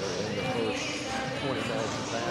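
Basketballs bouncing on a hardwood gym floor as players shoot around in warm-up, under the chatter of several overlapping voices in the gym.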